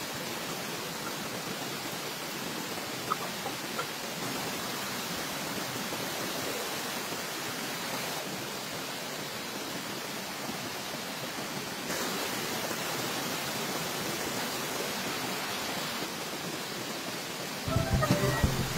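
Steady rushing of a river and small waterfall, with a few faint clicks about three seconds in.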